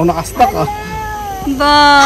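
A person's voice drawn out into two long held notes, each about a second long. The first starts about half a second in. The second is lower and louder and comes near the end.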